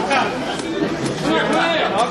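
Several people chatting at once, overlapping conversation in a large indoor hall.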